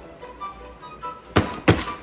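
Two sharp thunks, about a third of a second apart, late in the stretch, over faint background music with soft sustained notes.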